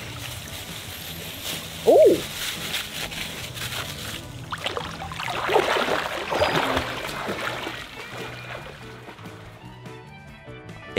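Water splashing and churning as a swimmer thrashes through a swimming pool, loudest in the middle seconds, over steady background music. A short "oh!" comes about two seconds in.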